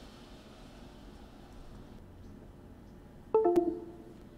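A short electronic chime of two quick notes, from the computer, about three seconds in, over faint steady room noise. It comes just as the firmware update finishes.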